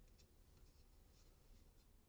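Near silence, with a few faint, short scratching ticks of a pine board being handled and turned over in the hands.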